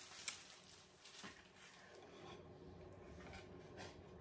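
Faint rustling of clear plastic wrapping being handled and pulled off a wooden board, with a sharp tap about a third of a second in and a few softer clicks later.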